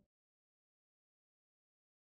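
Silence: no sound at all.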